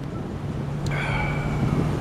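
City street noise: a steady low hum and rumble of traffic, with a faint high tone coming in about halfway through.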